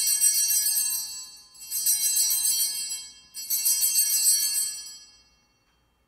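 Altar bells rung three times, each a bright jingling ring that fades over about a second and a half, marking the elevation of the consecrated host.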